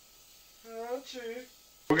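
A man's voice briefly humming two short notes whose pitch wavers up and down, after a quiet start.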